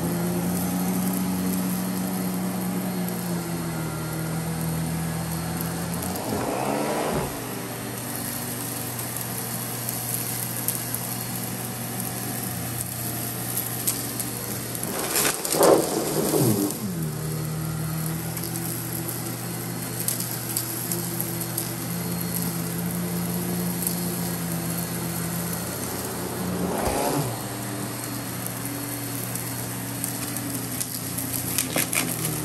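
Miele vacuum cleaner running with its powered floor brush on a shaggy rug, a steady hum. Three times the sound swells and swings up and then down in pitch, loudest about halfway through.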